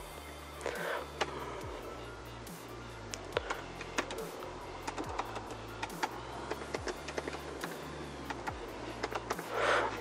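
Typing on a computer keyboard: a string of irregular key clicks, over quiet background music.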